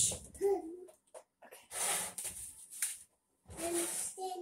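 A toddler's short high-pitched vocal sounds, one about half a second in and more near the end, with breathy, hissing noises between them.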